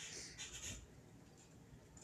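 Faint scratchy rustling: two short scratchy bursts in the first second, then only low background noise.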